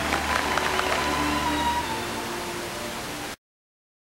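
Audience applauding, with music under it. The sound eases off, then cuts off suddenly a little over three seconds in.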